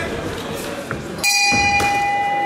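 Ring bell struck about a second in and ringing on with a bright, slowly fading tone: the final bell ending the kickboxing bout.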